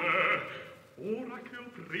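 An opera singer's voice with a strong, wavering vibrato: one held vocal sound ending about half a second in, and a second shorter one about a second in.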